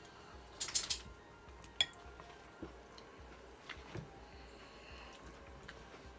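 Cutlery on a plate while eating: a short scrape about half a second in, one sharp clink near two seconds, then a few faint taps.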